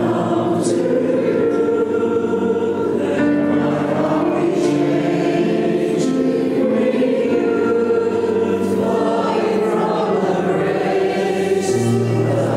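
Church congregation singing a slow worship song together, with keyboard accompaniment holding sustained low chords beneath the voices.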